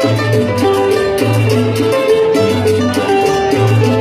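Live cumbia band playing with guitars, bass and percussion over a steady beat, heard loud and continuous from within the crowd.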